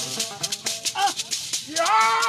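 Small hand-held gourd shakers rattle in a fast, steady rhythm over a plucked koni, the Bissa lute. A man's voice joins briefly about a second in and comes in loud with a sung phrase near the end.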